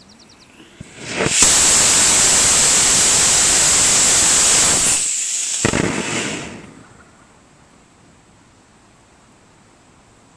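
A homemade 54 mm three-grain solid rocket motor of Wimpy Red propellant, about a J400, firing in a static test: a small pop or two as it lights, then a loud, steady rushing hiss from the nozzle for about three and a half seconds that tapers off over the last second or so. A nice smooth burn.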